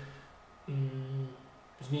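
A man's voice making one drawn-out hesitation sound, a steady "yyy" at a level pitch lasting about half a second, just under a second in, with quiet before and after it.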